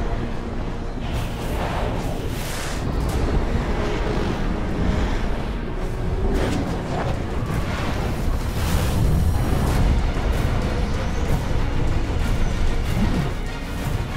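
Film soundtrack: music score mixed with a heavy low rush of wind, and several loud whooshes as wingsuit flyers streak past.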